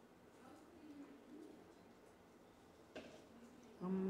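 Quiet room tone with a faint low murmur and a single sharp click about three seconds in. Just before the end, a woman starts humming one steady, low note with her mouth closed.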